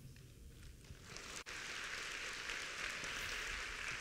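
Faint audience applause, setting in about a second in after a moment of near quiet and then going on steadily.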